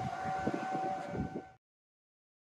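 A steady, held high tone with an overtone above it, over gusty low rumble on the microphone; a sharp knock at the start, and the sound cuts off abruptly about a second and a half in.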